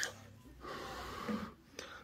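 A person breathing out after a hit off a vape: a soft breathy exhale starting about half a second in and lasting about a second.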